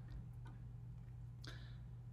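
A quiet pause with a steady low hum and a few faint, short ticks.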